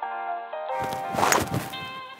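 Background music, and about halfway through a single sharp crack of a golf club striking the ball.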